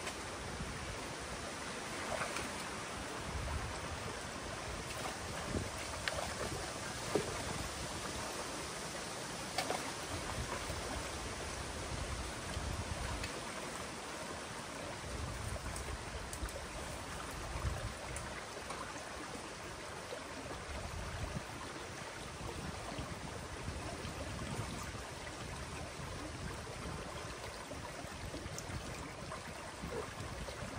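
Water rushing steadily through an opening breached in a beaver dam and running down the channel.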